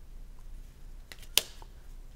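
Trading cards handled in the hands, with faint ticks and one sharp click about halfway through as a card is laid down on the tabletop.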